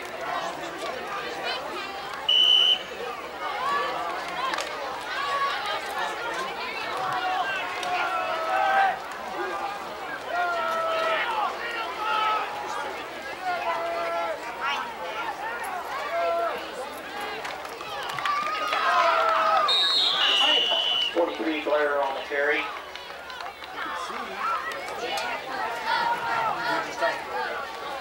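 Spectators in the stands talking over one another in loose, indistinct chatter. A short, steady high tone cuts through about two and a half seconds in, and another high tone that drops slightly in pitch comes about twenty seconds in.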